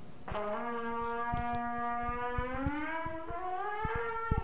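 Trumpet filled with helium played as one long sustained note that bends upward in pitch in the second half. The lighter gas raises the horn's resonant frequencies, and the player struggles to get the higher pitch to sound.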